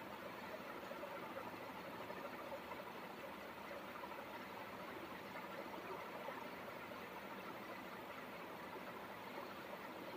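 Faint steady background hiss with no distinct events: room tone.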